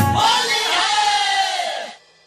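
A DJ remix sound effect after the beat stops: a crowd-like shouted sample over a noisy wash, its pitch sliding downward as it fades away near the end.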